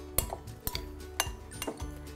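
Metal spoon clinking against a glass mixing bowl as cooked quinoa and vegetables are mixed, about five light clinks roughly half a second apart, over soft background music.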